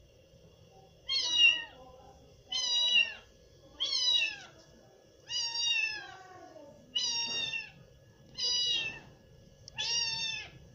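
A tabby cat meowing over and over: seven short meows about one every second and a half, each falling in pitch at its end.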